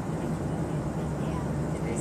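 Steady drone of an airliner cabin in flight: a constant low hum under an even rush of engine and air noise.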